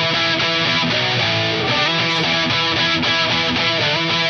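Electric guitar playing a rock riff, with notes that slide in pitch several times.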